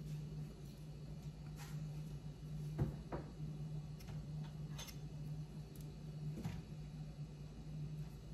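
Faint, scattered light clicks and scrapes of a small kitchen knife slitting vanilla bean pods, with a steady low hum underneath.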